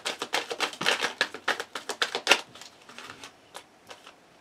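A deck of tarot cards being shuffled by hand: a fast run of crisp card clicks that thins out and fades after about two and a half seconds.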